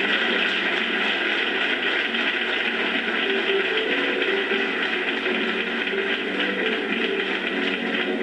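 Audience applauding steadily, played back through a television speaker.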